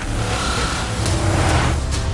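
Trailer sound-design swell: a loud rushing noise over a deep bass rumble that builds through the middle and eases off near the end, ahead of a cut to black.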